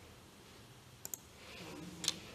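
Two quick computer mouse clicks, about a tenth of a second apart, against faint room tone.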